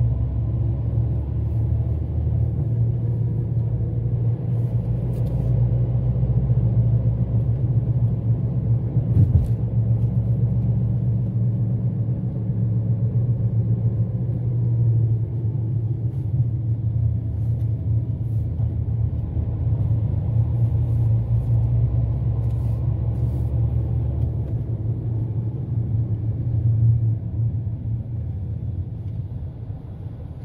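Steady low rumble of a moving car's engine and tyres on the road, heard from inside the cabin, with one short thump about nine seconds in.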